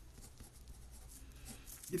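Pen writing on paper: faint scratchy strokes.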